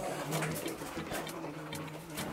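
A person's low, indistinct murmur, held steady for about a second and a half.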